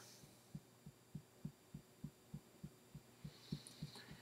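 Fingertips tapping on the collarbone point in EFT tapping: faint, soft, evenly spaced taps, about three a second.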